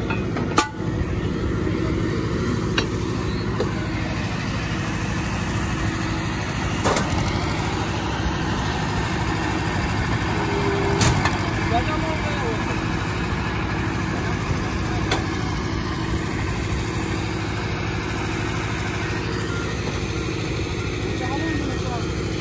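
Rebar bending machine's electric motor and gearbox running with a steady hum, with a few sharp clicks and knocks, the loudest about half a second in.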